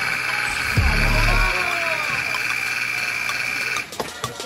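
Arena scoreboard buzzer sounding one long, steady, high-pitched blast of about four seconds that cuts off sharply near the end, signalling a stop in play. A dull thud comes about a second in.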